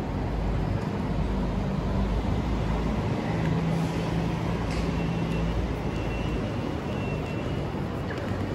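Steady low rumble of outdoor city ambience, like distant traffic, with a steadier low hum for about two seconds in the middle.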